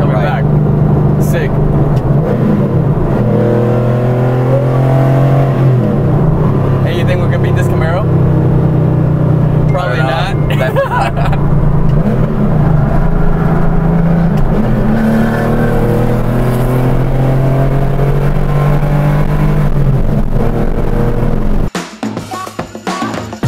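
Air-cooled 3.6-litre flat-six of a Porsche 964 Carrera 2 with a lightweight flywheel, heard from inside the cabin as it accelerates hard, climbing in pitch and dropping back at gear changes of its five-speed manual. The engine sound cuts off abruptly near the end.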